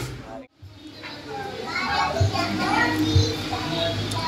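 Background chatter of a crowded café: overlapping distant voices, children's among them. The sound drops out briefly about half a second in, then the chatter resumes.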